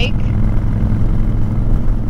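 Honda Fury's 1312 cc V-twin engine droning steadily while cruising at a constant speed, with a steady rush of wind noise over it.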